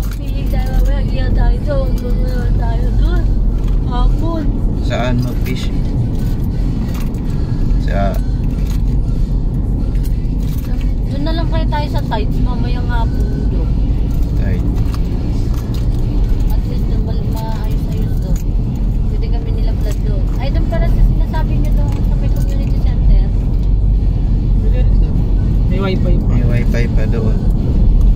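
Car driving along a road, heard from inside the cabin: steady low engine and tyre noise.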